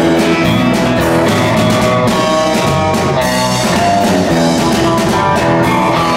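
Live rock band playing: electric guitar and bass guitar over a drum kit, with sustained guitar notes and a steady drum beat.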